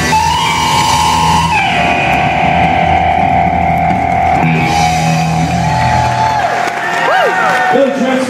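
Live rock band finishing a song: a long sustained electric guitar note, stepping down once early on, rings over bass and drums. The band stops about six and a half seconds in and audience whoops start near the end.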